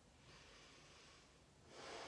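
Quiet, slow breathing of a person resting in child's pose: one long soft breath, then a louder breath near the end.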